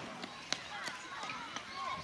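Children's voices calling out and shouting as they play, thin and high, with a sharp tap about half a second in.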